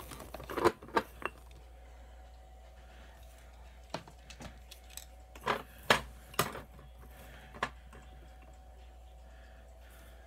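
Glass jars, lids and a measuring spoon being handled while dried herbs are measured out: a handful of irregular light clinks and knocks, a few in the first second and more around the middle.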